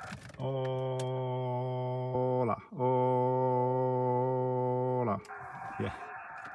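A man holding a steady "aaah" into the transceiver's microphone as he keys up on 40 metres, two long notes with a short break between them, each dropping in pitch as it ends; this gives the sideband transmitter something to put out while the ATAS-120 antenna is meant to tune.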